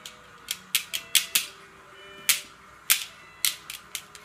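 Irregular sharp clicks and clacks of hard toys being knocked or tapped by toddlers, about two or three a second, with faint thin tones behind them.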